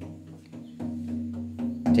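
Drum beaten in a steady rhythm, about four beats a second, over a sustained low drone.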